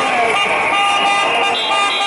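Street protest crowd: voices over a steady din of held horn tones, with a car passing close by.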